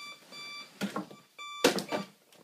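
Digital bedside alarm clock beeping: three short electronic beeps on one steady pitch, followed near the end by a short knock as a hand comes down on the clock.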